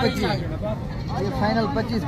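A young goat bleating, with men talking over it.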